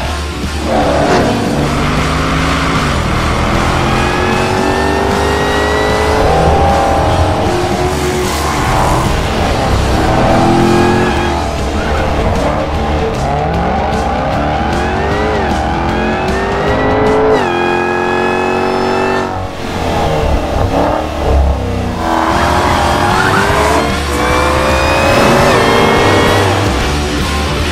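Jaguar XE SV Project 8's supercharged V8 accelerating hard through the gears. Its pitch climbs and falls back at each upshift, several times over, with music underneath.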